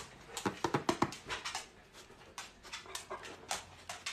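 A dog stirring and making small sounds: a quick run of soft clicks and breaths over the first second and a half, then scattered fainter ones.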